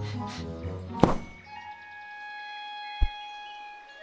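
Animated film soundtrack: score music with long held notes, broken by a loud thud about a second in and a shorter, sharp thump about three seconds in.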